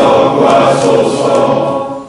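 A congregation reciting a prayer aloud together in unison, many voices in a chant-like cadence, trailing off near the end.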